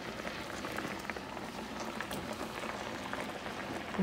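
Water boiling hard around potato pieces in a pan, a steady bubbling with a few faint ticks.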